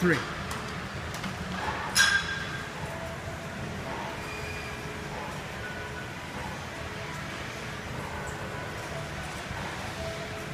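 A loaded steel barbell set down onto the bench-press uprights with one sharp metallic clank and a short ring about two seconds in, then steady gym background noise.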